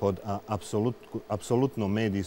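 Speech only: a man talking in Bosnian, mid-sentence.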